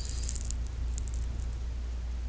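A steady low background hum, with a few faint light clicks in the first second.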